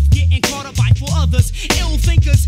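Hip hop track: rapped vocals over a beat with a deep bass line and sharp drum hits.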